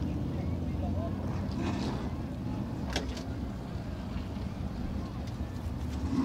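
SST modified race cars' engines idling in a low, steady rumble while the field sits stopped under caution after a crash, with a short click about three seconds in.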